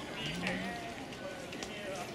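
Indistinct voices of people talking in the background, with a higher-pitched voice briefly rising above them about half a second in.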